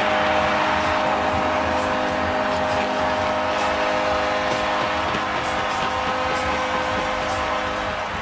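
Arena crowd cheering a home goal, with a goal horn's steady chord of tones sounding over the roar.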